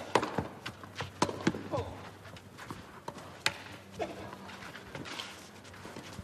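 Tennis rally on a clay court: sharp pops of racket strings striking the ball, about a second apart, with ball bounces and footsteps between, over a hushed crowd.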